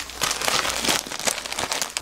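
Plastic bag full of chili powder crinkling and rustling as hands press and settle it into a plastic storage container.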